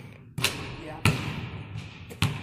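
Basketball bouncing twice on a hardwood gym floor, about two-thirds of a second apart, each thud echoing through the hall.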